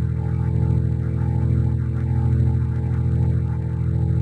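Background music: a steady low drone with a soft higher note repeating about twice a second.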